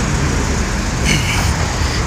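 Road traffic on a busy city street: cars driving past, a steady rumbling noise.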